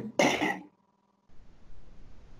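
A person clearing their throat in two short bursts, followed after a brief gap by a faint steady hiss.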